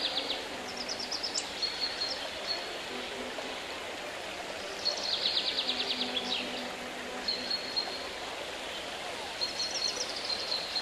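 Small songbirds chirping in quick, rapid-fire trills: a burst near the start, a longer one about five seconds in, and another near the end. Underneath runs a steady rushing sound like running water.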